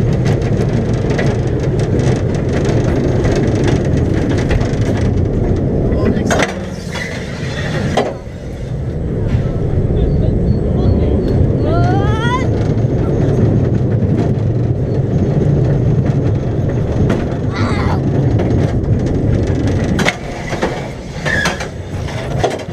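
Bobsled roller coaster train running at speed through its trough, a loud steady rumble of wheels on the track, with a short rising squeal about twelve seconds in. Near the end the rumble drops off and turns uneven as the train slows.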